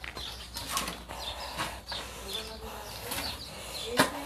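Faint outdoor background of small birds chirping in the trees, with brief rustles from the handheld phone moving.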